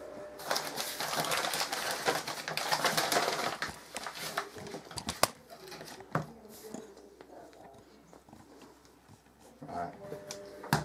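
Cloth tea towel rustling loudly for a few seconds as it is handled and spread out on a worktop. Then come a few light knocks and quieter handling noises.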